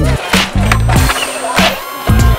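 Background music with a heavy bass beat over a skateboard rolling on pavement, with sharp board clacks.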